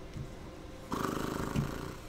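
A person's short, low, creaky throaty vocal sound, about a second long, starting near the middle.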